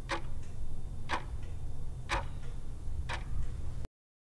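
Countdown-timer clock-tick sound effect, ticking about once a second with fainter ticks in between, over a steady low hum; it cuts off just before the end.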